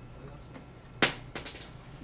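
A small cylinder, dropped through a vertical tube, hits the hard floor with one sharp click about a second in, then bounces with a few lighter ticks. It is the non-magnetic slug, which falls fast, unlike the magnet that the tube slows.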